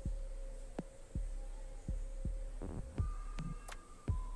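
Hands pressing and squeezing soft dough in a plastic bowl, giving a string of dull low thumps about every half second. A steady hum runs underneath and steps up in pitch about three seconds in.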